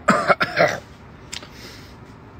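A man coughing several times in quick succession, loud and harsh, over the first second. A faint click follows.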